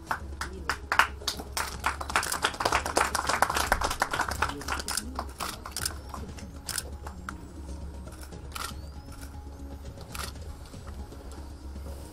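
Camera shutter clicks from press photographers, many crowding together in the first few seconds, then single clicks every second or two. Faint background music and a low hum lie underneath.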